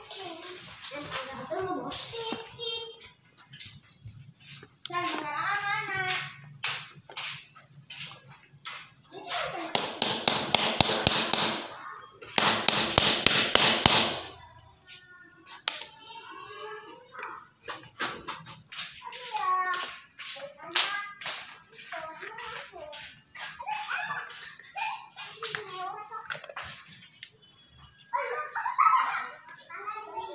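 Hand work on a power sprayer's water pump: a screwdriver taking out the pump body's screws, with scattered sharp clicks of tool and parts, and two loud rattling bursts about ten and thirteen seconds in. Voices of children talking in the background.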